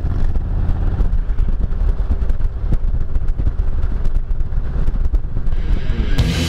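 Harley-Davidson touring motorcycle's V-twin engine running steadily at road speed, heard from the rider's seat with wind noise on the microphone.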